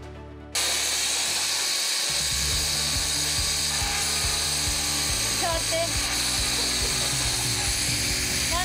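Electric round-knife cutter running steadily, its spinning circular blade slicing through white racing-suit leather. The machine noise starts suddenly about half a second in.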